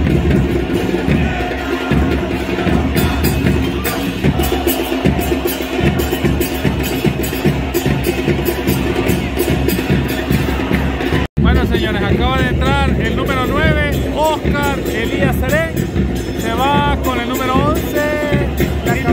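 A supporters' drum band in the stands beats a steady rhythm while the crowd chants. About eleven seconds in the sound cuts out for an instant, and then a singing voice rises clearly above the drums.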